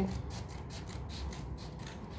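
Scissors cutting through a mailed package's wrapping in a quick, even run of cuts, about five a second.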